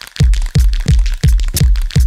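Hip hop instrumental beat dropping in a moment after a brief gap: heavy deep bass kicks in a quick, steady rhythm with sharp percussion hits over them.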